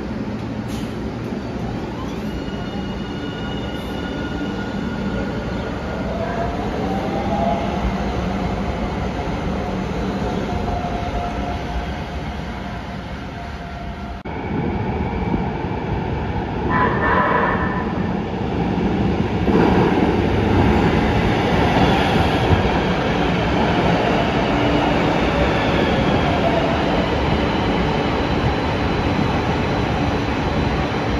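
LA Metro light-rail trains: in the first half a train moves off from a platform, its motor whine rising as it speeds up. In the second half another train comes out of a tunnel and pulls into the platform, growing louder, its wheels rumbling and squealing as it slows.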